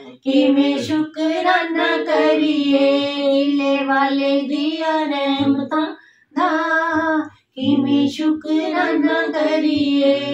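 Women's voices singing a Punjabi devotional hymn of thanks, unaccompanied, in long held notes, with short breaths about one, six and seven and a half seconds in.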